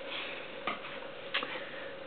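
Quiet room tone with a steady faint hum and two soft clicks, one under a second in and one about halfway through.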